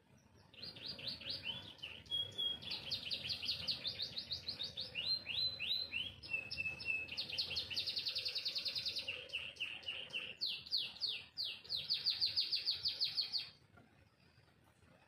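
Domestic canary singing one long unbroken song of rapid trills and quick repeated notes, with a few short held whistles, starting about half a second in and stopping just before the end.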